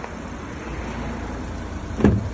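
Steady outdoor background noise, a low rumble with a hiss and no distinct events.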